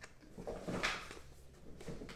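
Handling and opening a rigid cardboard trading-card box at a table: three brief soft scrapes and knocks, about half a second in, near one second, and near the end.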